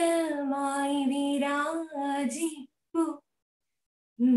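A woman singing a prayer song solo and unaccompanied, in long held notes. The singing breaks off about two and a half seconds in, with one short note just after three seconds.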